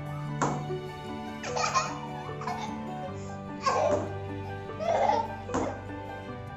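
A young girl laughing heartily in several short bursts, over steady background music.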